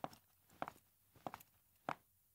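A woman's footsteps on a hard floor: four even steps a little over half a second apart.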